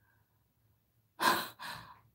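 A woman's breathy exhales: about halfway through, a strong unvoiced puff of breath, followed at once by a softer one.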